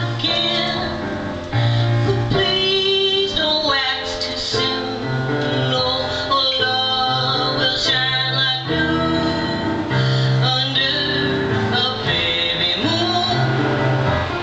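A woman singing while accompanying herself on a Yamaha electronic keyboard, with low notes held about a second at a time under the vocal melody.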